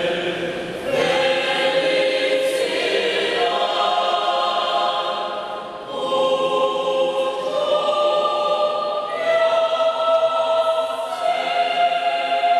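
Mixed choir of men and women singing a Peruvian carnaval arequipeño song in sustained chords that change every second or two, with a brief dip in level about six seconds in.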